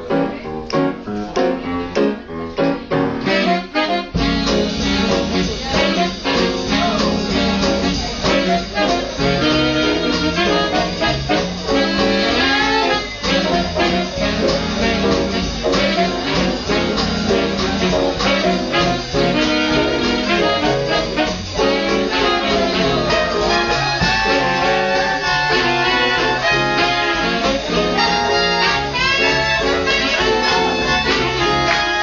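A live big band playing swing jazz, with horns out front. It is sparse for the first few seconds, then the full band with bass comes in about four seconds in.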